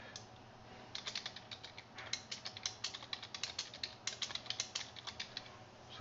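Typing on a computer keyboard: a quick, irregular run of key clicks that starts about a second in and stops shortly before the end.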